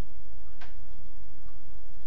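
Room tone in a pause between words: a steady low hum with a faint click about half a second in and a fainter one near the end.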